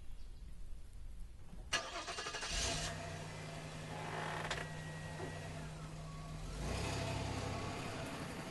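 A car engine starts about two and a half seconds in and settles into a steady idle, then runs a little louder near the end.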